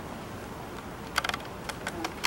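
A few sharp clicks of laptop keys being pressed: a quick cluster about a second in, then two single clicks, over low room hum.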